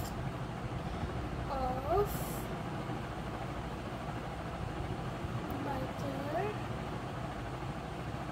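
Steady low background rumble with a few short, distant voices rising and falling in pitch, and one brief rustle about two seconds in.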